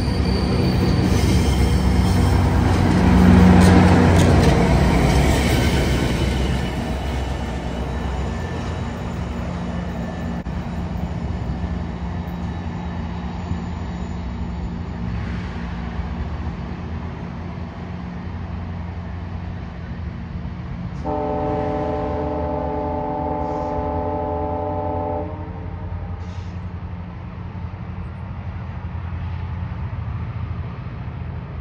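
GO Transit bilevel passenger train rolling past and pulling away, its rumble peaking a few seconds in and then fading. About 21 seconds in, the distant train's horn sounds one long steady chord lasting about four seconds.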